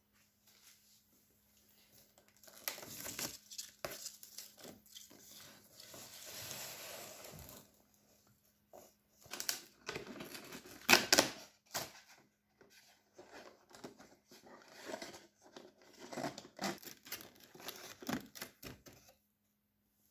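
Cardboard door of a Douglas cosmetics advent calendar being torn and pulled open by hand: irregular tearing, crinkling and small clicks of card and packaging, starting after about two seconds of quiet and loudest about halfway through.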